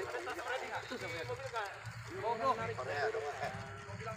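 People talking in the background, the words indistinct, over a low steady rumble.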